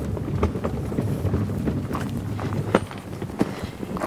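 Garden wagon loaded with bags of potting soil pulled over pine-straw mulch: a steady low rumble of rolling wheels with scattered clicks and rattles, along with footsteps.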